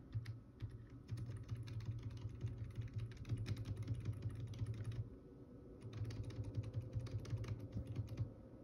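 Rapid clicking from computer controls as a long on-screen list is scrolled down, in two runs: one of about four seconds, then after a short pause another of about two seconds.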